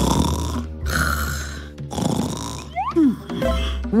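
Snoring, about three snores roughly a second apart, over cheerful background music. Near the end, a short sliding-pitch sound effect.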